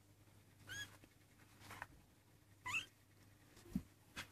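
Young Maine Coon kitten mewing twice: high, thin mews about a second in and near three seconds, the second rising in pitch. A low thump near the end.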